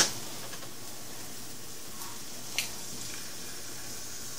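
Avocado ring and tater tots frying in oil in a pan: a steady low sizzle, with a single sharp tap about two and a half seconds in.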